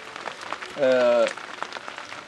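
Steady rain pattering, with one short spoken syllable about a second in.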